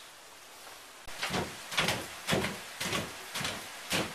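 A series of thumps, about two a second, beginning about a second in, from a child bouncing on a rubber hopper ball on a wooden floor.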